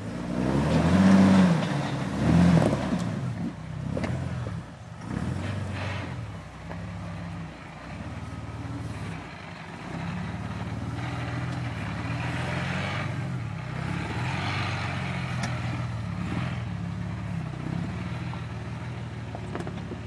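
Jeep Wrangler engine revving as it climbs a rocky dirt trail: two strong revs in the first three seconds, then running steadily under load.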